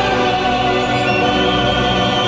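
Choral singing of a long held chord over instrumental backing.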